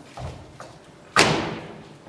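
A loud thump about a second in, as a suitcase is dropped onto the stage floor, ringing out briefly in the hall. Around it, the knock of high-heeled footsteps on the stage, about two a second.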